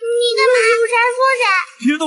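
A child's high, drawn-out sing-song cry, held for about a second and a half with a slight waver, followed near the end by a short, lower voice.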